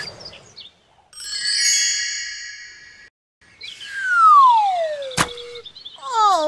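Cartoon sound effects: a chiming, tinkling shimmer of high tones for about two seconds, then a long falling whistle, the stock sound for something dropping. A sharp click comes near the end of the fall.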